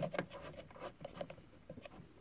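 Light clicks and scratchy rustling as a metal coax connector and its cable are handled at a watt meter's port, a run of small irregular ticks with the sharpest click at the very start.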